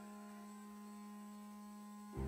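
A faint, steady low hum, with nothing else heard.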